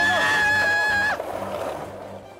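A high-pitched yell, held on one note for about a second and then cut off, followed by a short fading rush of noise. Background music plays underneath.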